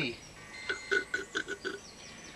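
A quick run of about seven short chirps of steady pitch, coming in a little over a second and starting about two-thirds of a second in.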